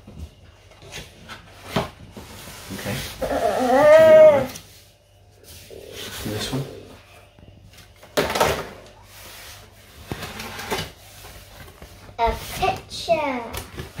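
A cardboard shipping box being opened by hand, its flaps pulled open with scraping and knocking. A loud, drawn-out voiced exclamation rising and falling in pitch comes about four seconds in, with short vocal sounds near the end.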